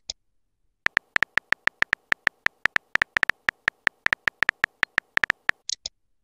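Simulated phone-keyboard typing clicks from a texting app's typing animation: about thirty short, sharp, slightly tonal ticks in quick, uneven succession as a message is keyed in letter by letter. A brief hissy message-send swoosh comes near the end.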